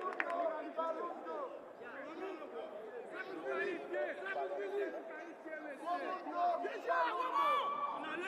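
Several men's voices shouting and calling out across a football pitch, overlapping in loose chatter.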